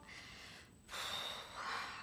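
A woman's breath close to the microphone: a faint breath out, then a longer, louder breathy sigh starting about a second in.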